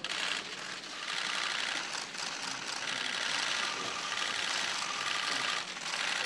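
Many press cameras' shutters clicking rapidly and continuously, a dense overlapping clatter throughout.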